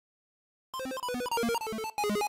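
Short electronic logo jingle: after a brief silence, a quick run of clipped electronic notes hopping between a few pitches at about eight notes a second.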